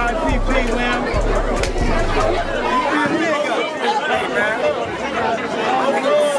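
Crowd chatter: many voices talking at once in a large hall, over background music with a deep bass beat that stops about halfway through.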